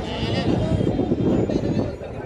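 A bleat over a thick babble of people's voices, as at a livestock market; the wavering call stands out near the start.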